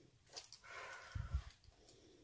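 A person sniffing at a tin held up to her nose: a faint drawn-in breath, with a soft low bump just after a second in.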